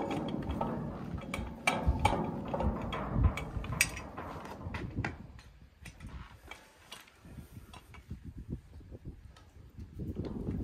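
Steel swivel trailer jack being worked onto a trailer tongue's mount: dense metal clicking, rattling and clanking for the first half, then sparser, fainter taps and knocks.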